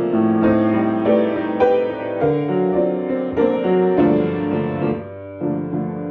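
Grand piano played solo in a slow blues improvisation, chords and melody notes struck one after another at an unhurried pace. The playing thins to a brief, softer lull about five seconds in, then picks up again.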